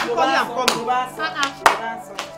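Women's excited voices and laughter over background music, broken by three sharp hand claps: one at the start, one a little later, and the loudest near the end.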